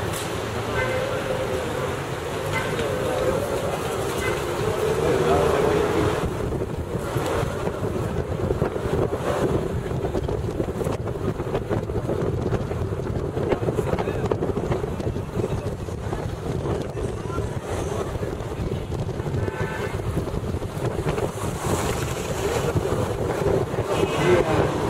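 Taxi driving through city streets, heard from inside the cab with a side window open: steady engine, road and wind noise, with some voices.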